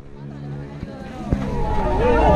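Background voices of people talking, sparse at first and growing louder toward the end, over a low steady hum.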